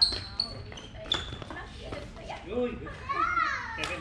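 Badminton rally: sharp knocks of racket strings striking the shuttlecock, the loudest right at the start, another about a second in and one near the end, with players' voices rising and falling in the echoing hall.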